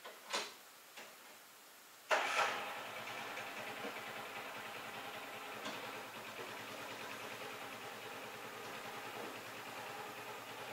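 Two short clicks, then an engine starts abruptly about two seconds in and settles into a steady idle.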